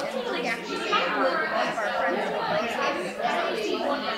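Women's voices talking in a large hall, the words not clear enough to make out.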